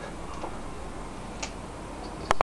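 Quiet, steady background noise with two faint ticks about a second apart.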